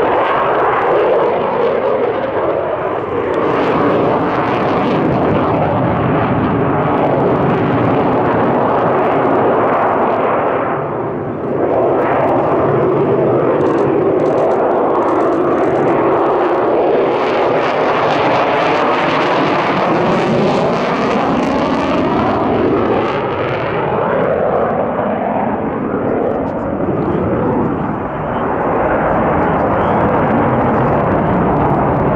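Sukhoi Su-57 fighter's twin jet engines, loud and continuous through a display manoeuvre, the pitch slowly sweeping up and down as it turns. The sound dips briefly about eleven seconds in.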